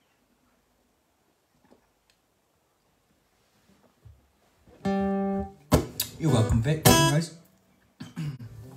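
Near silence for the first few seconds. Then, from about five seconds in, come an acoustic guitar and a man's voice: first a held note that stops short, then a strum with a wavering vocal sound over it for about a second and a half.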